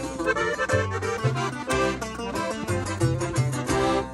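Norteño band playing an instrumental break between sung verses of a corrido. An accordion runs through quick melody notes over a bass line that alternates in a steady two-beat rhythm.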